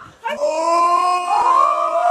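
A long, loud, held cry with a clear pitch that steps higher about halfway through and carries on past the end.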